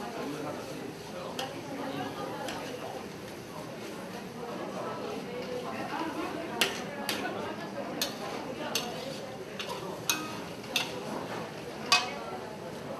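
Metal spatula stir-frying noodles in a steel wok, scraping the pan. In the second half it clinks sharply against the wok about nine times.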